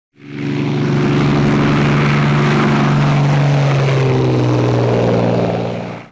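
A loud, steady engine-like drone with a low hum, fading in at the start and out near the end, with a tone that slides down in pitch midway.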